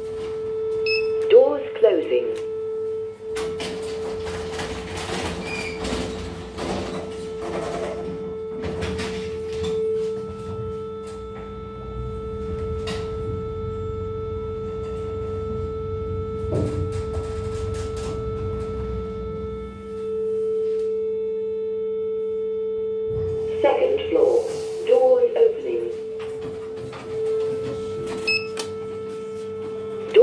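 Otis passenger lift car travelling between floors: a low rumble from the ride starts a few seconds in and dies away about two-thirds of the way through as the car stops. A steady tone runs underneath.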